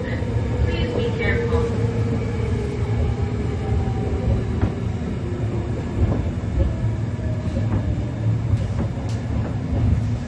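Kyoto Municipal Subway 10 series train with armature chopper control running on the rails: a steady low rumble with a few short rail clicks and a faint motor-control tone that drifts slowly down in pitch early on.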